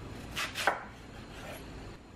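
Chef's knife chopping through a large white radish on a wooden cutting board: two quick cuts about half a second in, the second louder, then a fainter one.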